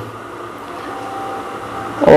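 Steady background noise with a low hum and a faint thin tone, no distinct events.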